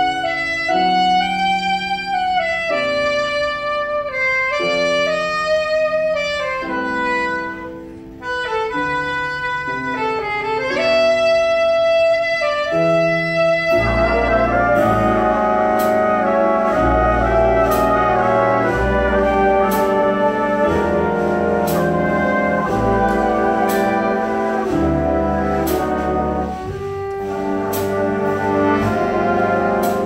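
Jazz big band with a saxophone solo over light backing. About halfway through the full band comes in with brass and drums, cymbal hits marking the beat.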